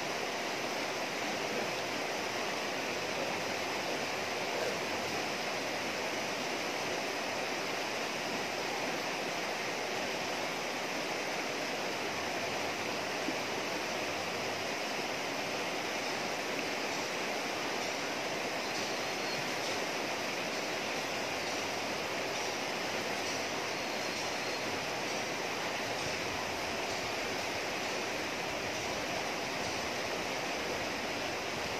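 River water rushing steadily over rocks and shallow rapids.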